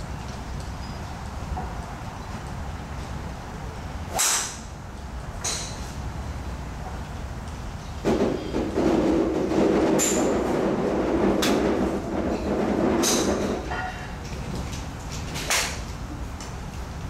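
A golf driver striking a ball off a range mat with one sharp crack about four seconds in, followed later by several more sharp cracks. From about the middle, a loud steady rumble lasts some five seconds, the loudest sound here.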